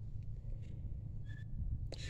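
Steady low background rumble outdoors, with a faint, brief high-pitched chirp about a second and a half in.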